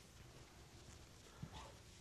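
Faint swishing of a chalkboard eraser wiping the board, with a soft knock about one and a half seconds in, over near-silent room tone.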